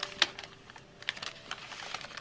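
Light clicks, taps and rustles of a kraft-paper gusset bag and clear plastic film being handled and pressed on a cutting mat while glue is dabbed along the edge. One sharper click comes about a quarter second in.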